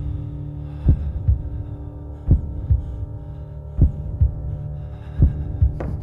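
A heartbeat-like double thump, repeating about every second and a half, over a steady low droning hum.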